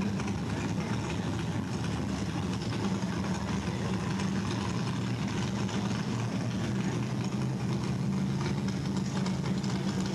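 A steady, unchanging low mechanical drone.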